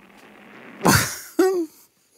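An elderly man clears his throat once about a second in, a harsh burst followed by a short voiced sound that falls in pitch.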